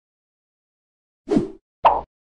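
Two short popping sound effects about half a second apart, coming in after a second of silence: the sound of an animated logo intro as the icon pops onto the screen.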